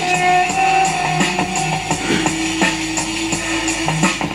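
Music played from tape through a homemade push-pull tube amplifier (ECC83 driving two 6L6-type output tubes) and its loudspeaker, at high volume. Sustained notes over a steady beat.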